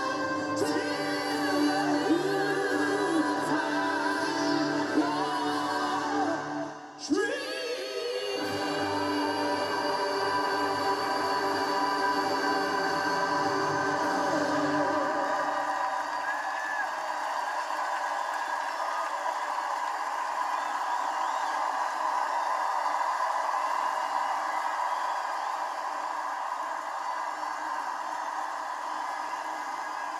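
Music with a choir singing over orchestral accompaniment. About halfway through, the bass drops out, leaving long held chords, and there is a brief dip in the sound about seven seconds in.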